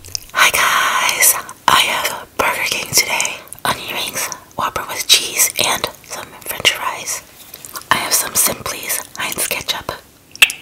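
A woman whispering close to the microphone, breathy and unvoiced, in short phrases with pauses between them.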